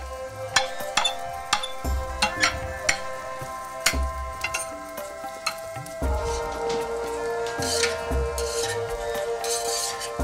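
A metal spatula scraping and clicking against a ceramic plate and a steel tray as fried rice and vegetables are pushed and lifted, with sharp clicks about once a second. Background music with held chords and a soft beat runs underneath, its chord changing about six seconds in.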